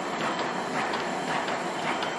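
Automatic non-woven cap making machine running: a steady mechanical clatter of repeated short knocks, about three a second, over a constant hiss.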